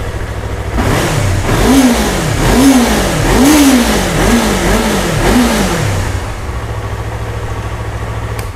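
Yamaha R3's parallel-twin engine idling, then blipped about six times in quick succession, roughly one rev a second, before settling back to idle. On its stock exhaust it runs smooth and quiet.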